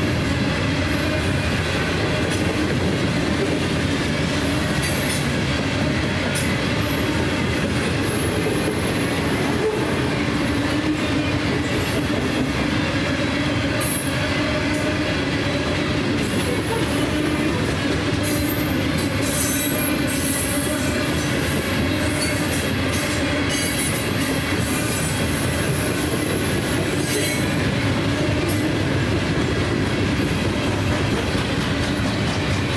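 Freight cars of a Norfolk Southern coal train rolling past close by: a steady roar of steel wheels on rail, with high-pitched wheel squeal coming and going.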